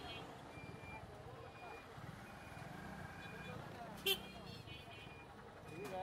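Busy street traffic heard from a slow-moving motorbike: a steady low engine rumble under the chatter of a crowd, with one sharp knock and brief ring about four seconds in.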